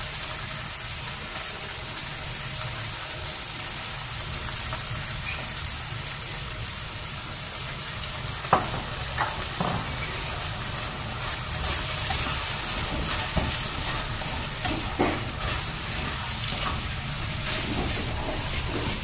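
Sausage and mixed vegetables sizzling steadily in a wok on a gas flame as they are stir-fried, with a few short knocks of the spatula against the pan around the middle and again later.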